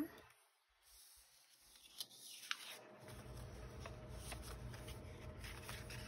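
Paper and cards being handled and shuffled on a tabletop: a few light taps and a short rustle, faint overall. About halfway through, a faint steady low hum comes in and stays.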